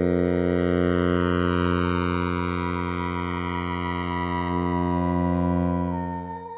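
Electronic music: a held synthesizer drone chord, with a high tone wavering up and down in pitch and faint falling sweeps above it.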